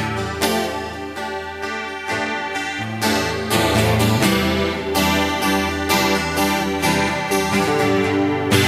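Acoustic guitar strumming chords in a steady rhythm, playing a folk song's instrumental intro, getting fuller and louder about three seconds in.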